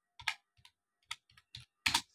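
Keys being typed on a computer keyboard: a run of separate, irregular keystrokes, the loudest near the end.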